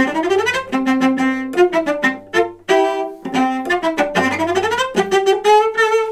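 Solo cello playing a passage of separate short bowed notes that mixes quick, bouncing sautillé strokes with slower controlled spiccato strokes.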